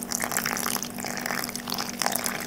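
A thin stream of yeast-and-water mixture pouring into flour in a glass bowl while a metal spoon stirs it, with many small clicks and scrapes of the spoon against the glass.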